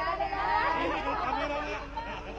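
Chatter of a crowd of reporters and camera crew, several voices talking at once and overlapping, with no single clear speaker.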